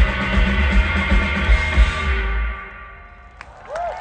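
Indie rock band playing live on electric guitars, bass and drum kit, bringing the song to its end about two seconds in. The last chord rings and fades, and the crowd's first cheers come in near the end.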